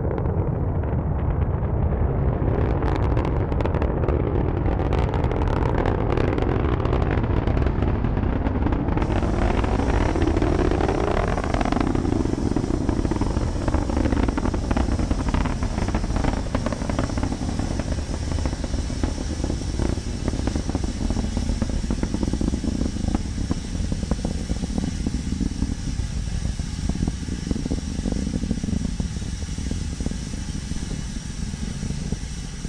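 Falcon 9 first stage's nine Merlin engines in flight: a loud, steady deep roar, crackling for the first several seconds, then a rumble whose pitch slowly wavers, easing slightly in the second half.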